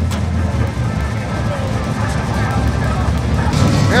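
Old pickup truck engine idling, a steady low rumble.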